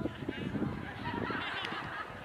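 Several voices shouting and calling out across the field, high-pitched, with no clear words.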